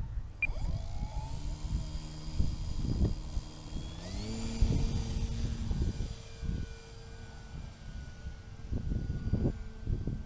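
An RC model aerobatic plane's motor and propeller spinning up about half a second in, then stepping up in pitch about four seconds in as the throttle opens for the take-off, and holding a steady tone as it climbs away. Irregular low thumps run underneath.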